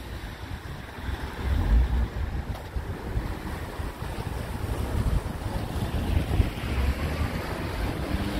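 Wind buffeting the microphone in uneven low gusts, the strongest about two seconds in, over a steady hiss of rain.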